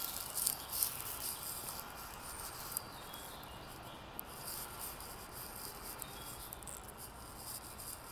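Quiet open-air ambience: a steady low hiss with scattered light clicks and a few faint, short high chirps.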